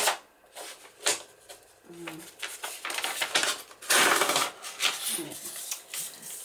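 Stiff handmade paper being pulled up against a metal deckle-edge ruler and torn: sharp crackles near the start and about a second in, then rough rustling and a longer tearing rasp about four seconds in. The fibrous handmade paper does not tear cleanly along the ruler.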